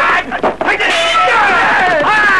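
Overlapping shouts and cries of many men in a battle scene, several voices sliding down in pitch at once.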